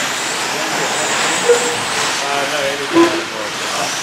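Electric short course RC trucks of the 13.5-turn brushless class racing on a dirt track: a steady hiss of tyres and high-pitched motor whine.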